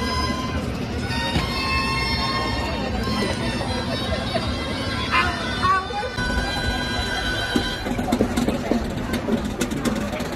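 Folk tune led by a bagpipe-like reed pipe playing a melody in long held notes, over the chatter of a crowd. A run of sharp clicks comes near the end.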